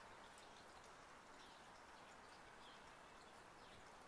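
Near silence: faint steady outdoor background hiss, with a few very faint high bird chirps.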